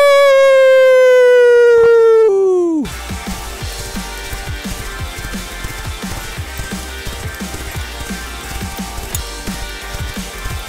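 A cartoon character's long held yell, slowly falling in pitch, that breaks off about three seconds in. After it comes background music with a steady beat.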